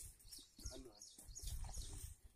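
Faint outdoor ambience: distant voices, a run of short high chirps about half a second to a second and a half in, and a low rumble.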